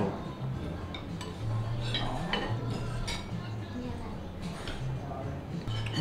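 Metal cutlery clinking now and then against ceramic plates and bowls, as a few light ticks spread through the moment, over low table chatter.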